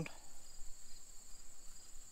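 A steady, high-pitched insect chorus: a continuous shrill trill with a fainter lower tone beneath it, unbroken throughout.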